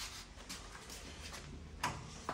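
Faint light clicks from a hand on a newly replaced 1970–81 Trans Am outside door handle, with a sharper click near the end, over quiet garage room tone.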